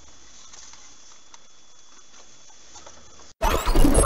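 Faint steady hiss with light scattered ticks from the dashcam recording of an RT news clip, then, near the end, a sudden loud RT channel ident sting: a whooshing rising sweep that settles into ringing held tones.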